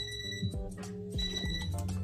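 Interval timer's alarm beeping as the work interval ends, two high half-second beeps about a second apart, over background music.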